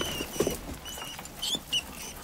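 Caged rats squeaking and scrabbling: several short, high squeaks over quick, light scratching. This is the Room 101 rat cage being brought up to the prisoner.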